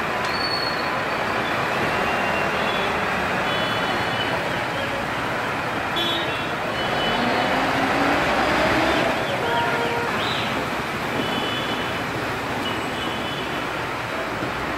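Road traffic and a backhoe loader's engine running on a flooded street, a steady wash of engine and tyre noise, with short high beeps now and then.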